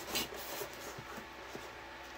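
A large diamond painting canvas rustling and rubbing against a tabletop as it is rolled up by hand, with a short swish just after the start.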